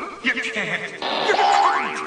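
Cartoon soundtrack of wordless character noises and comic sound effects, with a pitched sound sliding upward in the second half.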